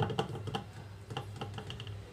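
A quick run of light clicks and taps, about eight in two seconds, over a low steady hum.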